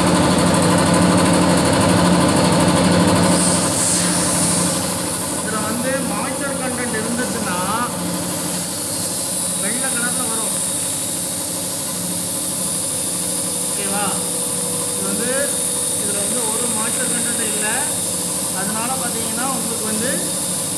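Two-stage reciprocating air compressor, belt-driven by an electric motor, running steadily with a loud, even hum.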